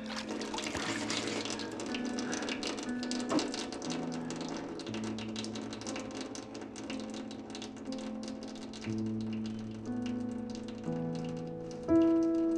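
Water from a kitchen tap splashing as a man washes his face at the sink, the splashing thinning out as it goes on. Under it runs a slow musical score of held low notes that swells near the end.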